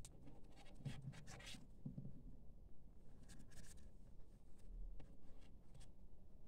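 Paper yarn crochet work rustling and crinkling in the fingers as it is handled and turned, with small scratchy clicks and two brief bursts of rustle.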